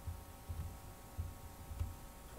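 Four soft, low thumps, unevenly spaced, over a faint steady hum.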